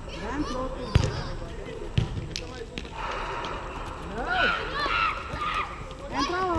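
Two sharp hits of a volleyball about a second apart during a rally on sand, with players' voices calling out around them.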